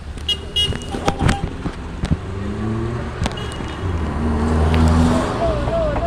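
Busy road traffic: vehicle engines running with a low rumble, several sharp clicks in the first half and two short high beeps in the first second. A wavering voice-like call comes in near the end.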